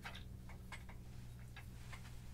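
Faint scattered clicks and ticks from handling the clip mount at the top of a microphone stand, over a steady low electrical hum.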